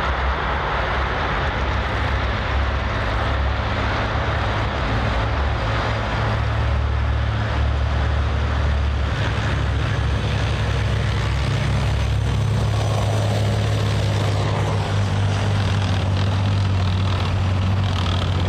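Main battle tanks driving at speed: a steady, loud low engine drone with a rushing noise of tracks and movement over it, the low note shifting up a little about halfway through.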